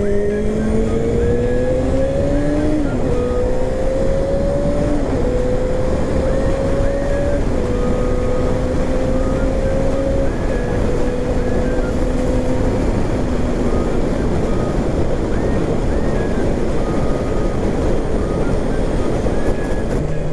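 Honda CBR250R motorcycle engine under way, heard through a loud steady rush of wind and road noise: the revs climb and drop back three times in the first seven seconds as it shifts up, then hold steady and sink into the wind noise.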